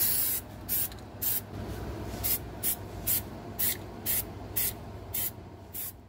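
Aerosol can of Rust-Oleum undercoating spraying: a longer hiss at the start, then short bursts about twice a second, over a low steady hum.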